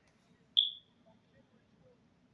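A single short, high-pitched electronic beep about half a second in, fading out quickly.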